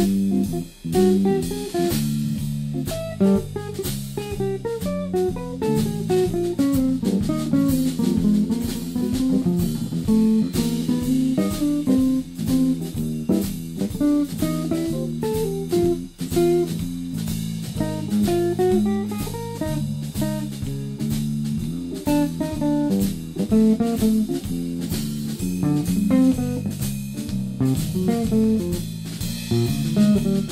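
Live blues-jazz band jam: two guitars, bass guitar and drum kit playing together, with one guitar picking a running melodic line over the chords, bass and drums.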